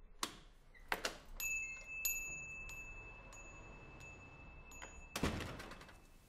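Shop-door sound effect: a couple of latch clicks, then a small bell ringing and jingling for about four seconds, ended by the thud of the door shutting.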